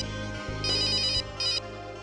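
Mobile phone ringtone ringing: high electronic warbling rings in short bursts, one about halfway through and a shorter one right after, over low steady background music.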